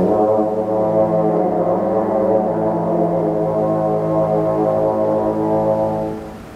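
French horn playing one long held note, starting cleanly and sustained steadily for about six seconds before it fades.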